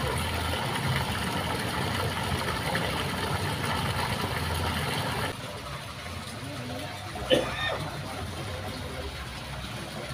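A steady low engine-like hum with voices in the background; it drops in level about five seconds in, and a man calls out once about seven seconds in.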